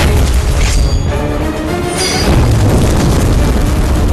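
Action-film battle soundtrack: loud dramatic score with deep booms and crashing impacts.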